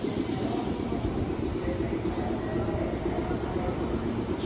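Red Meitetsu electric commuter train pulling out of the station and drawing away, its motors and wheels on the rails making a steady running rumble.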